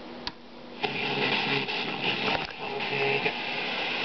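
Vintage Panasonic FM-AM multiplex stereo receiver switched on with a click, then about a second in, steady radio static and hiss comes up through its speakers as the set is tuned.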